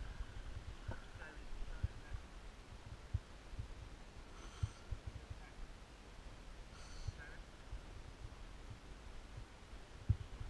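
Low rumble of wind on the microphone and small knocks from the boat while a rowing shell glides with its crew still. A bird calls twice, briefly, about four and a half and seven seconds in.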